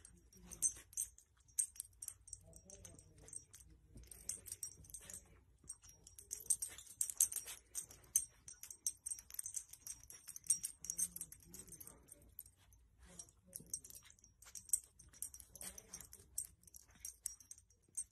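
A small dog sniffing and nosing among a baby's blankets: quiet, irregular rustling and light, high clicking.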